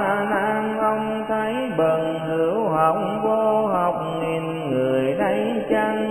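A voice chanting a Buddhist sutra in Vietnamese, on long held notes that glide from one pitch to the next.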